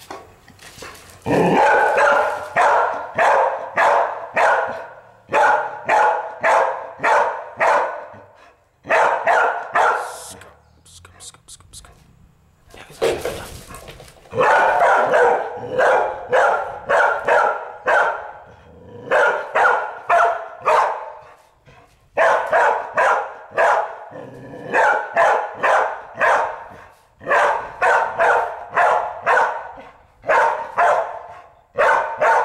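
Young red-nose pit bull barking over and over at a green iguana, the territorial barking of a guard dog at an intruder. The barks come about three a second in runs of several, with short pauses between the runs.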